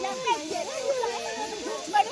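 Overlapping voices of several women calling out and chattering to one another, some drawn-out calls among them.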